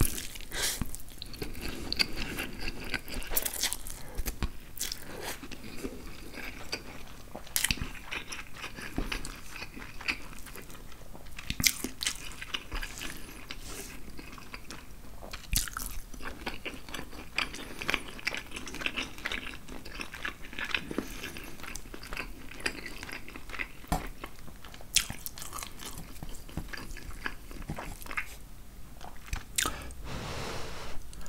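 Close-miked chewing and slurping of angel hair pasta: wet mouth sounds with many sharp clicks scattered throughout.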